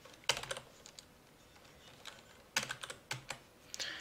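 Two short flurries of computer keyboard and mouse clicks, one about a third of a second in and another from about two and a half seconds in, then a single click near the end.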